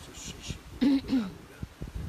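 A man clearing his throat: two short rasps about a second in, followed by a few soft low thumps.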